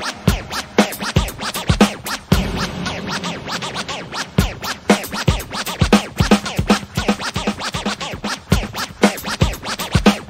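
Hip hop DJ mix playing from turntables: a steady beat with a kick drum about twice a second, with turntable scratching worked over the record.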